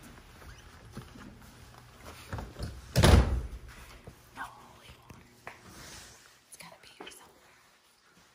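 A heavy door thudding shut once, about three seconds in, with a short low boom after it.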